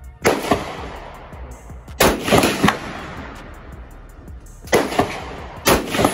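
AR-style rifle shots at an outdoor range: four sharp reports, each dying away in a short ringing echo, the last two close together.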